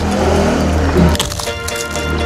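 Background music with a steady beat, over which fried pappadam crackles several times as it is crushed by hand.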